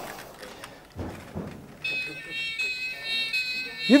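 Toy police car sounding its electronic siren: steady high-pitched electronic tones start about two seconds in, after a couple of soft knocks.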